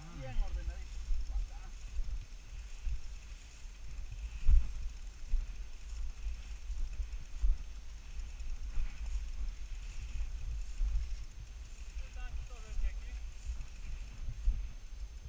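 Low rumble and knocking on a handlebar-mounted camera as a bicycle is pushed uphill through tall grass, with one sharp loud knock about four and a half seconds in. Brief bits of a voice near the start and again near the end.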